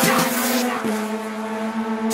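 Race car engine at speed on the straight, its high end fading away, heard over background music.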